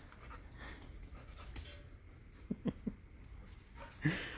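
Border collie-type dog panting quietly, with three short whimpers in quick succession about two and a half seconds in.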